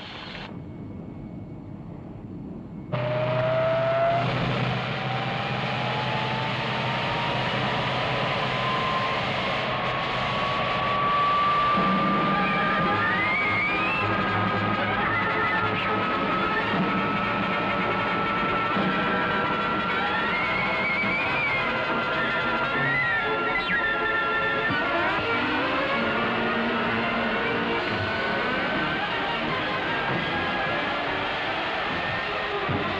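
A jet fighter's turbine engine starts suddenly about three seconds in, then runs steadily as the aircraft taxis away: a low rumble under a high whine that climbs slowly in pitch. Music plays over it.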